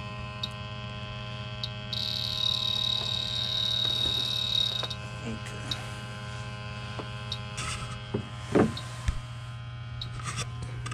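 H-10 PRO electronic refrigerant leak detector running with a steady hum and giving short high ticks about once every second or so. About two seconds in it sounds a continuous high tone for about three seconds, then goes back to ticking. A few handling knocks come near the end, the loudest one about 8.5 s in.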